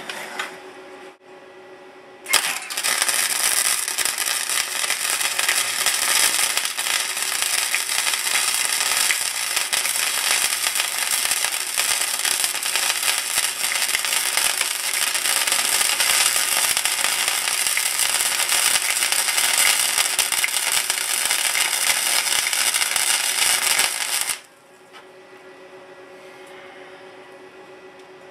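Electric arc welding on a cracked sheet-steel siren horn: the arc strikes about two seconds in, runs as one loud, continuous, even noise for about twenty seconds, and cuts off suddenly near the end.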